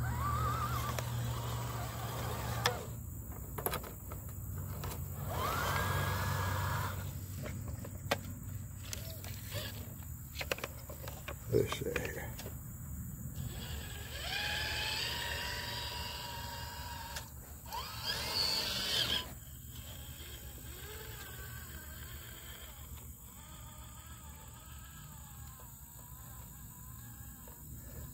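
Electric motor and gear drive of a radio-controlled scale crawler truck whining in several bursts as it drives a trailer across grass, the pitch rising with throttle about five seconds in and again around fourteen and eighteen seconds, quieter in the last third.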